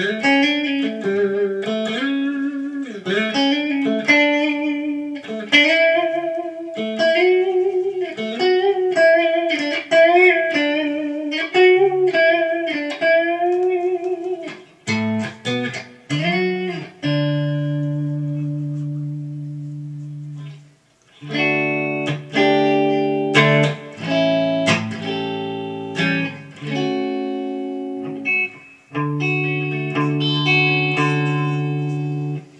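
Carvin CT-6 electric guitar played through a Marshall JVM 210H head and 1960A 4x12 cabinet on a clean tone: a melodic single-note line with string bends for about the first fifteen seconds, then held, ringing chords with a brief pause about twenty seconds in before more chords.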